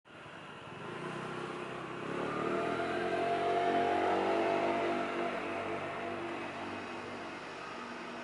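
A motor vehicle's engine running nearby, growing louder to a peak about four seconds in, then easing slightly and holding steady.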